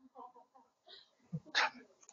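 Faint voices of audience members calling out from across a lecture room, with a short, sharp breathy vocal sound about one and a half seconds in.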